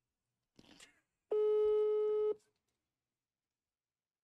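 Ringback tone from a mobile phone on speaker held up to a microphone: one steady mid-pitched beep about a second long, the signal that the call is ringing at the other end (Brazil's one-second ringing tone).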